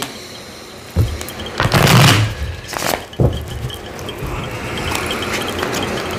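A deck of tarot cards being shuffled by hand, the cards sliding and rustling against each other. There are a few short knocks and a louder rustling burst about two seconds in, then a steadier shuffle through the second half.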